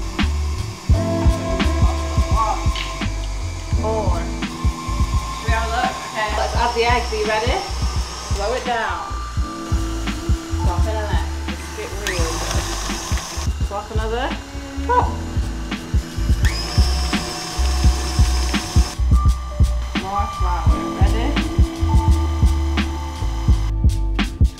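Background music with a steady bass beat and vocals. An electric stand mixer runs underneath at times, beating butter in its metal bowl.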